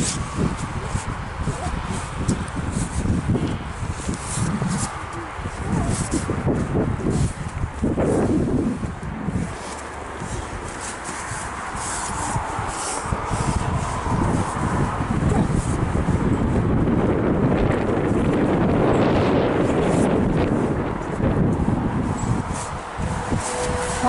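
Wind rumbling on the microphone, with scattered footsteps and knocks on snow-dusted perforated metal playground steps.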